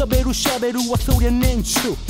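Mid-1990s Japanese hip hop track: a rapper's verse over a beat with a deep bass line.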